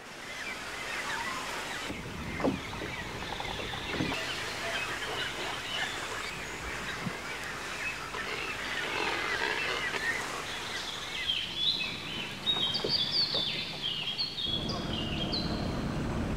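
Many birds calling and chirping together over outdoor background noise. A quick run of short, high whistled notes stands out near the end.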